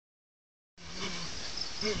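Steady high-pitched buzzing of insects, starting abruptly just under a second in, with two short low calls over it, one soon after the start and one near the end.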